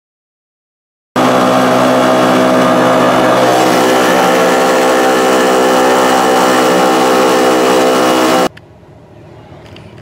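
Tohatsu 5 hp four-stroke outboard motor running steadily at cruising speed, with water churning in its wake. It starts suddenly about a second in and cuts off abruptly about a second and a half before the end, leaving a much quieter background.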